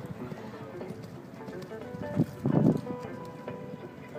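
Hoofbeats of a cantering show hunter on arena sand, under music with steady held notes. A brief louder sound comes about two and a half seconds in.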